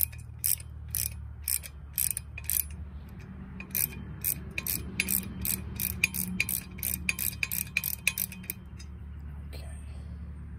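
Ratcheting wrench clicking as a bolt and nut are run down on a mower hitch bracket. The clicks come about two a second at first, then after a short pause speed up to about four a second.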